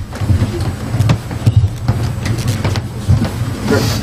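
Low rumbling and handling noise with scattered knocks and clicks, as people move about close to the desk microphones on the dais.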